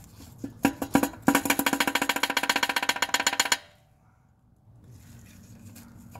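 Connecting rod of a Toyota 2ZZ four-cylinder engine rocked by hand on its crankshaft journal, clacking metal on metal. There are a few separate knocks, then a quick run of clacks for about two seconds that stops suddenly. The play comes from a spun rod bearing, the result of running the engine low on oil.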